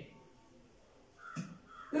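Dry-erase marker squeaking briefly on a whiteboard as letters are written, after about a second of near silence. A word of speech starts right at the end.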